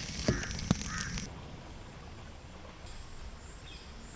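Sharp pops of a wood fire for about the first second, with a couple of short bird calls. Then it drops to a quieter open-air background with a few faint, high bird chirps.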